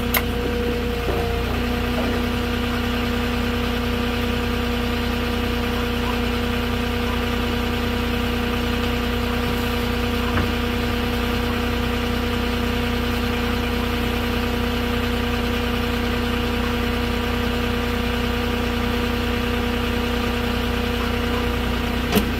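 Moffett truck-mounted forklift engine idling steadily, with a small step in pitch about a second in.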